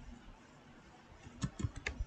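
Faint computer keyboard keystrokes: a few separate key clicks in the second half, typing a short command.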